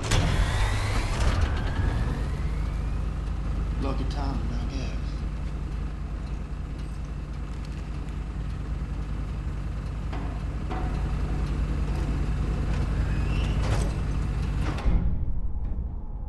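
A steady low rumble with a sudden loud hit at the start, sliding tones in the first two seconds and a few scattered knocks, ending with a sharp hit about a second before the end.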